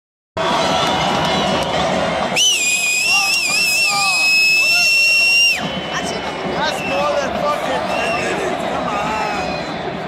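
Stadium crowd noise at a soccer match, with a loud, high whistle starting about two seconds in, wavering at first and then held steady for about three seconds before it cuts off suddenly.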